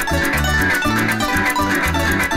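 Venezuelan llanero harp (arpa llanera) playing a fast joropo seis: quick plucked treble runs over deep bass-string notes, backed by a cuatro and the steady shake of maracas.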